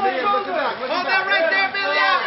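Overlapping voices of a crowd, several people talking at once.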